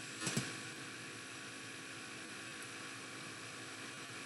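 Faint steady hiss of the recording's background noise with a light hum, and a brief faint sound about a third of a second in.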